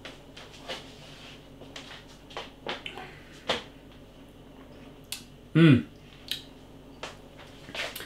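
Mouth sounds of a man tasting a mouthful of beer: soft, wet lip smacks and tongue clicks, about nine of them spread out, with a short hum from the throat falling in pitch about five and a half seconds in, the loudest sound.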